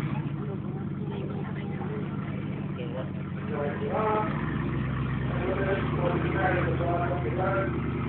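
A lifted 4x4's engine running at low revs as the truck creeps across dirt, with a steady low note. The note gets slightly louder about four seconds in, and voices chatter over it.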